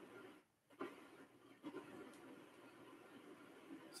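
Near silence: faint hiss, with a couple of faint soft ticks.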